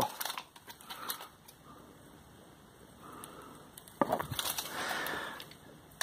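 Faint handling noise: scattered light clicks and rustling, with a cluster of sharper clicks about four seconds in followed by about a second of soft rustling.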